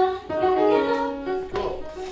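Upright piano playing a short phrase of held notes stepping downward. The phrase lasts about a second and a half, then a brief noise and a quieter stretch follow.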